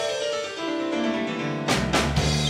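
Stage keyboard playing a piano-voiced break with little else under it, the drums and bass dropping out. Near the end the full band comes back in with a drum hit and the bass.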